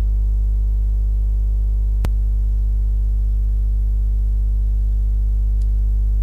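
Loud, steady electrical mains hum with a ladder of overtones, and a single sharp click about two seconds in.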